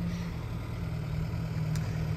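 Isuzu diesel engine of a Safari Trek motorhome idling steadily, a low even hum.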